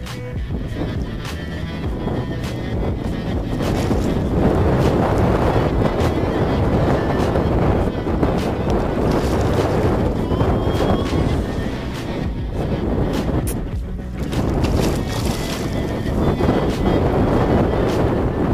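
Strong wind buffeting the microphone, a rough rumbling rush that rises and falls in gusts, louder from about four seconds in and dipping briefly near the fourteenth second.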